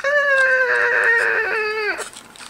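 A man's voice holding one long, high note whose pitch sags slightly, stopping just before the end.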